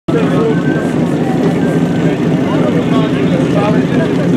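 Engine of a portable fire pump running steadily at the start of a firefighting-sport attack, with voices over it.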